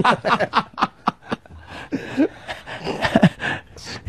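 Men laughing and snickering in short bursts, quieter and more scattered after the first second or so.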